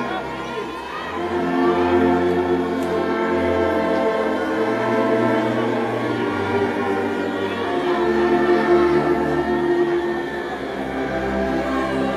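Brass band with sousaphones playing a slow hymn in long held chords. The bass notes change every few seconds.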